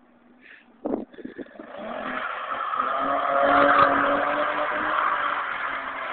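Nissan 300ZX (Z32) V6 engine revving hard as the car drifts with its tyres spinning on the slushy lot; the sound builds from about a second and a half in to a peak past the middle, then holds. A short knock comes about a second in.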